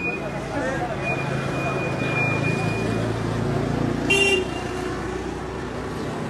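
A vehicle horn gives one short beep about four seconds in, the loudest sound here, over the steady low hum of an engine running nearby.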